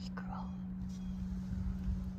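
Low, uneven rumble of wind buffeting the microphone, swelling a little near the end, over a steady low hum; a brief soft whisper just after the start.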